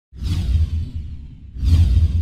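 Cinematic logo-reveal sound effect: a falling whoosh over a deep low boom, then a second, louder whoosh and boom about a second and a half later that trails away.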